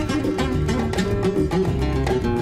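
Background music on acoustic guitar, a run of plucked notes at a steady level.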